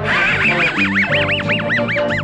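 Muttley the cartoon dog's wheezing snicker laugh, a quick run of about five rising-and-falling wheezes a second, over cartoon background music.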